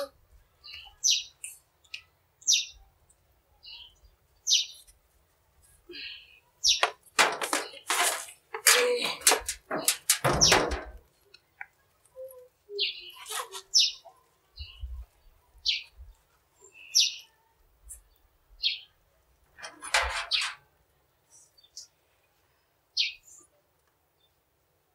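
Small birds chirping in short, scattered calls, with a louder run of scratchy noises between about seven and eleven seconds in.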